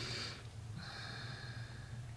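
A woman's faint breaths in a pause between words: a short one, then a longer one of about a second, over a low steady hum.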